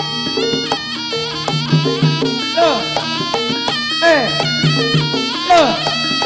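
Live jaranan gamelan music: a shrill reed wind instrument plays over held metallophone and gong tones, with sweeping downward pitch glides recurring about every second and a half in the second half.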